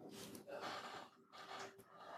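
Faint drinking sounds from a man sipping from a glass bottle: a few soft breaths and swallows in short bursts.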